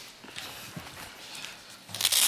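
Footsteps: a few soft, irregular steps of a person walking across a studio floor.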